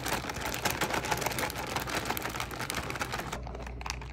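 Foil-lined chip bag crinkling rapidly as it is shaken by hand to mix the water and soap inside, stopping a little over three seconds in.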